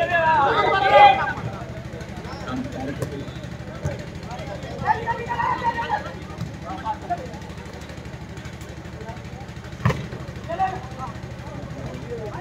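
Shouts from players and spectators during an outdoor volleyball rally, loudest in the first second or so and again around five seconds in, with a single sharp smack of the ball being hit near the end and a few fainter ball contacts. A steady low hum runs underneath.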